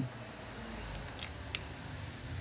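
A steady, faint, high-pitched whine, with two light clicks about a second and a half in from handling the stripped phone frame.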